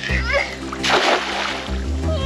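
A cast net landing on shallow water: one brief splash about a second in, over background music with a steady bass line.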